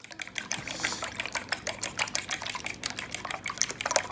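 A metal fork beating eggs and milk in a bowl: quick, repeated clicks as the tines strike the bowl, with the liquid sloshing.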